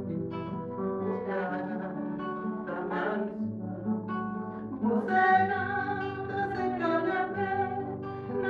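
Acoustic guitar playing a morna, with plucked chords and bass notes. A woman's singing voice comes in about five seconds in, over the guitar.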